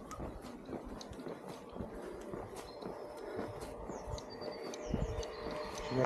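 Trekking-pole tips and shoes tapping on asphalt in a brisk walking rhythm, with a few faint high bird chirps.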